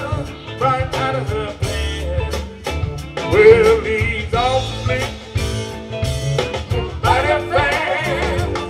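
Live electric blues band playing: electric guitars, bass, drums and keyboards, with singing over the band and bending, wavering melody lines.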